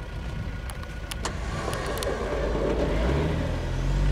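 Engine of a large passenger van stuck in deep sand, running and rising in revs as it tries to drive out, growing louder towards the end.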